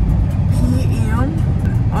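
Steady low rumble of road and engine noise heard from inside the cabin of a moving car.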